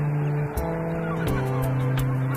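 Background music: sustained low notes and chords that change every second or so, over a light ticking percussion.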